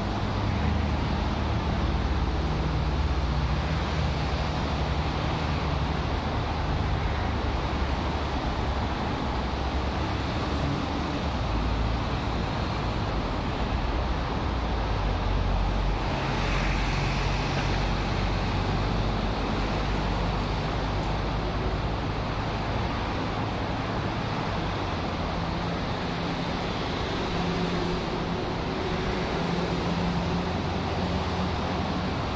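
Steady road traffic on a multi-lane city road: a continuous hum of car engines and tyres as vehicles pass.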